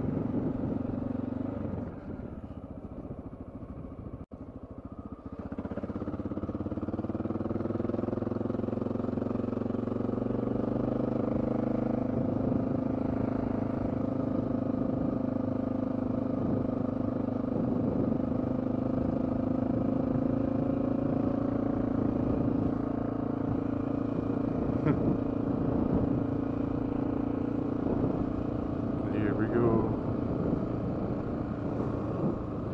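Honda XR650L's single-cylinder four-stroke engine running while the bike is ridden on a gravel road. The engine drops quieter for a few seconds near the start, then rises in pitch as the bike picks up speed, and holds steady at cruise for the rest of the time.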